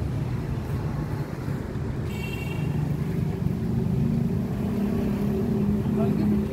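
Auto rickshaw engine running, its pitch rising about three seconds in as it revs. A brief high-pitched tone sounds about two seconds in.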